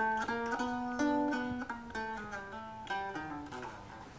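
Electric guitar, a Gibson ES-355, played without vocals: a short run of plucked chords and picked notes that step by semitones, a chromatic chord move. The notes ring and change every half second or so, fading near the end.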